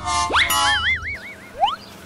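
Cartoon-style comic sound effects: a quick upward whistling glide, then a wobbling boing tone for about half a second, then another short rising glide.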